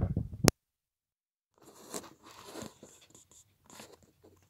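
Handling noise on a phone as a plug-in microphone is unplugged: close rubbing ends in a sharp click about half a second in, then a second of dead silence while the audio input switches over, then fainter scraping and rustling of hands on the phone, heard through its built-in mic.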